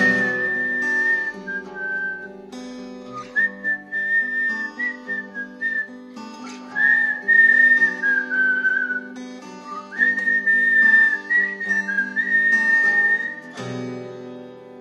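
A whistled melody in four phrases with short breaks, over acoustic guitar chords, closing the song.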